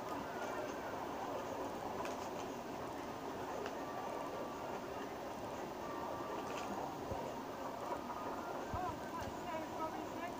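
Steady running noise of a small park train in motion, with indistinct voices of people aboard, heard as played back through a phone's speaker.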